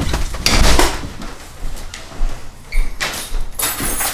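Bumps, knocks and rustling of movement as people walk through a house, with two louder noisy bursts, one about half a second in and one about three seconds in.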